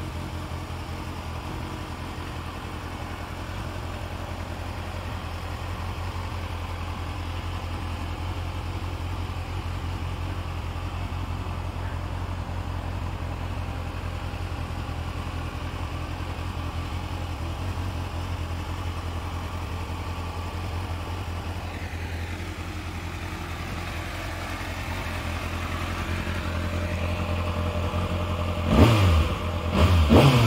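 Kawasaki Ninja ZX-6R's 636 cc inline-four engine idling steadily. About a second before the end the throttle is blipped: the revs rise sharply and fall back.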